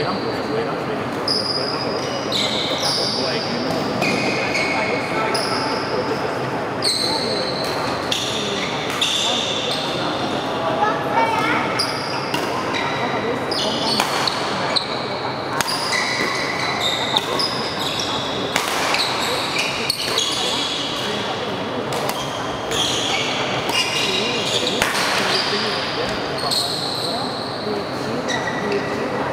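Badminton rally in a large hall: court shoes squeaking in short, high squeals on the mat as the players move, with sharp racket strikes on the shuttlecock.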